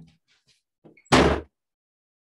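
A room door being shut: a few faint knocks, then one loud bang about a second in as the door closes.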